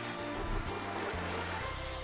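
Slot game soundtrack on the end-of-bonus win screen. A noisy sea-like wash is followed by sustained low music notes entering near the end.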